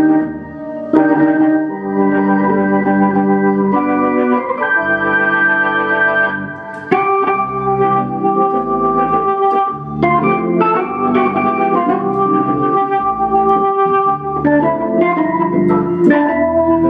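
1965 Hammond B3 organ played through a Tallboy Leslie speaker: full held chords with a moving melody on top, changing every second or two, with heavy added reverb.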